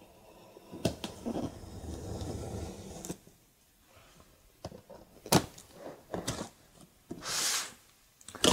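Packing tape on a cardboard box being slit and pulled open: a sharp knock, a couple of seconds of scraping along the seam, then scattered knocks of the cardboard being handled and a short ripping hiss near the end.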